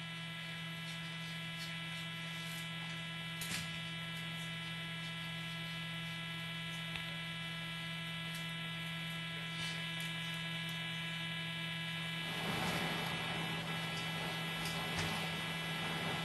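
Steady electrical hum with a buzzy edge on a broadcast audio feed, unchanging in pitch. About three-quarters of the way through, a faint hiss of noise rises beneath it.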